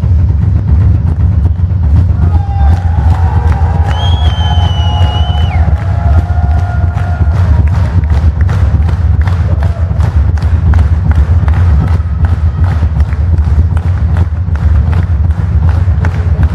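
Live drum kit in a drum solo, keeping a steady beat of about three to four strokes a second with heavy kick drum, while a crowd cheers along. A whistle sounds from the crowd about four seconds in.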